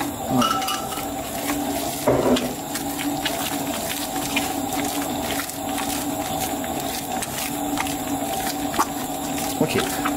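Stand mixer running steadily with a steady hum, its dough hook kneading brioche dough in a steel bowl, with a few small knocks.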